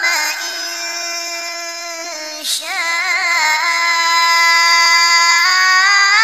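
A single high voice chanting Quranic recitation in a long, ornamented melodic line, holding drawn-out notes with wavering pitch. There is a short breath about halfway through.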